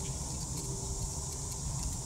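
Steady, high-pitched drone of an insect chorus over a low rumble, with a faint held tone fading out partway through.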